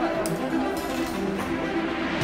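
Background music with sustained, held notes.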